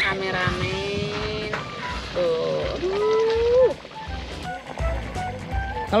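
A woman's voice making long wordless held sounds, one after another, over background music. A quick rising whistle-like sound effect comes right at the start.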